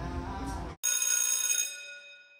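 A single bell-like chime, several clear tones ringing together and fading away over about a second. It starts just before the one-second mark, right after the room sound cuts off abruptly.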